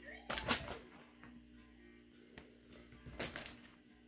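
A rabbit hopping and scuffling on the carpet of its wire pen: two short bursts of knocks and scuffles about three seconds apart, over a steady low hum.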